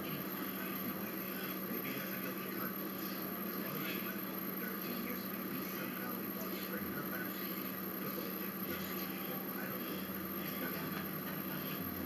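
Exercise machine being pedalled steadily: a low steady running noise with faint, irregular squeaks from its moving parts, over a constant electrical hum.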